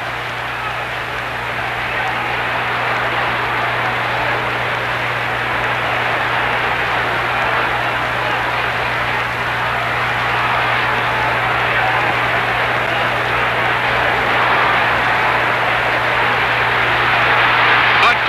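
Boxing arena crowd noise: a steady din of many voices that grows slowly louder toward the end, over a low steady hum.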